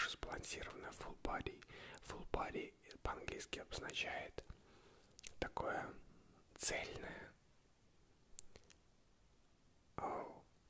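A man whispering close to the microphone, with many sharp clicks along the way. The whispering stops about seven seconds in, leaving only a few faint clicks.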